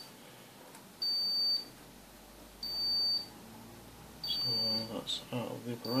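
Insulation resistance tester (Vici VC60B+) beeping at a steady high pitch during a 250 V insulation test of a variac: four beeps about a second and a half apart, each about half a second long.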